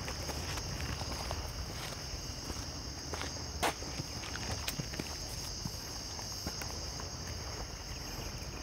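Footsteps on a dry dirt trail, with irregular crunches underfoot and one sharper crack about halfway, over a steady high chirring of night insects.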